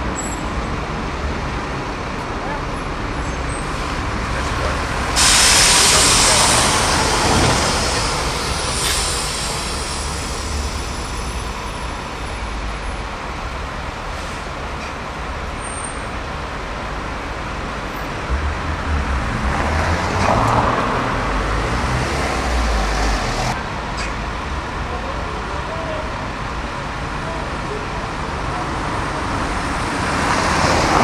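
Diesel double-decker bus idling at a stop amid street traffic, with a sudden loud hiss of released air about five seconds in that fades over a couple of seconds. A second, longer hiss comes later and cuts off abruptly, over a heavier engine rumble.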